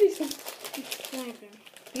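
Mostly boys' voices talking, with light crinkling of a candy wrapper being handled.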